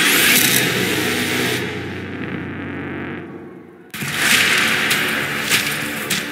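Cinematic title-teaser soundtrack with music and sound effects. A low drone thins and fades over a couple of seconds into a brief dip, then a sudden loud hit lands about four seconds in, followed by sharp crashing impacts.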